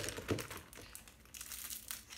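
Makeup brushes being handled and set down: light clicks and rustling, with a sharp click at the start and a busier patch of rustling near the end.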